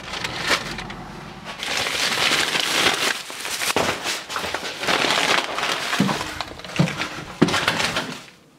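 Rustling and crinkling of a plastic take-out bag being handled, with a few sharp knocks near the end.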